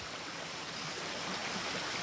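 Creek water running, a steady even rush that grows a little louder toward the end.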